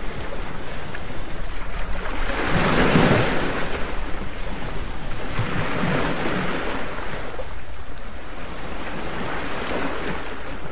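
Ocean surf: waves washing in and drawing back, a rushing swell of noise rising and falling about every three seconds.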